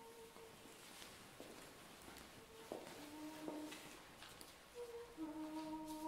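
Faint hummed starting pitches given to a children's choir before an Orthodox chant: single held notes at first, then from about five seconds in several notes sounding together as the voices take up the opening chord. A few soft knocks of movement come in between.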